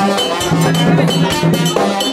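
Haitian Vodou ceremonial music played live: drums with a struck metal bell keeping a steady, fast rhythm under held pitched tones.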